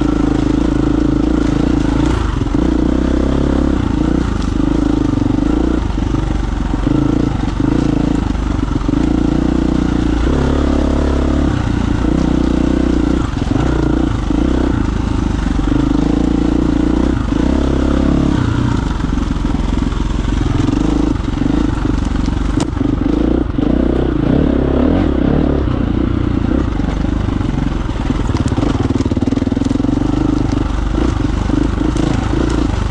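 KTM 350 EXC-F dirt bike's single-cylinder four-stroke engine running under throttle on a trail ride, its revs rising and falling as the rider works through the single-track.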